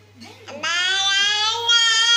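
An 11-month-old baby's long, high-pitched vocal sound, one drawn-out sung-out note starting about half a second in and held for about a second and a half.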